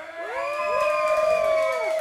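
A small audience whooping and cheering as a live heavy rock song ends. Several voices rise in pitch together, hold for about a second and a half, then fall away near the end.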